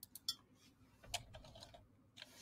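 Faint computer keyboard keystrokes as a word is typed into a search: three quick clicks at the start, then another short run a little over a second in.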